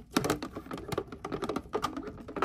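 Hard plastic parts clicking and knocking irregularly as they are handled: a black plastic bucket lid fitted with white plastic fittings being turned over in the hands.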